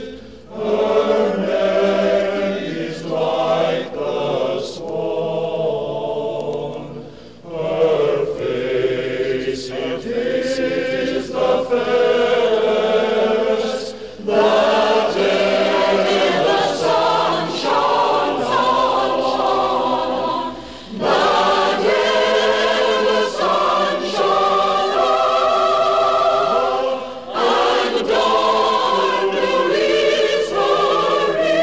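A choir singing phrase after phrase with brief breath pauses between them, with a softer passage about four to seven seconds in.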